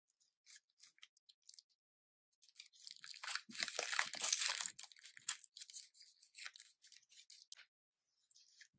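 Sterile peel-pack of a syringe being torn open by gloved hands: a rasping tear of a couple of seconds in the middle, with faint crinkles of the packaging before and after. A single sharp click near the end.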